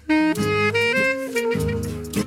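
Saxophone playing a melody, resuming just after a brief break at the start, with notes changing several times a second over a lower accompaniment.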